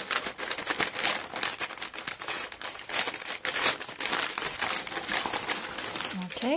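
Kraft-paper padded envelope being torn open and crumpled by hand while a plastic-wrapped parcel is pulled out of it: a continuous run of irregular crinkles and crackles.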